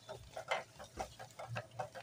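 Spatula stirring thick, oily curry masala in an aluminium pot, with short irregular soft pops and scrapes as the masala fries.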